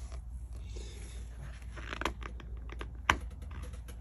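Hands handling the paper pages of an open book: scattered light clicks and taps, with a sharper tick just after three seconds in.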